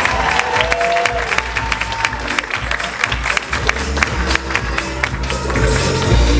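An audience clapping, with whoops and cheers in the first second or two, over loud show music with a heavy bass line.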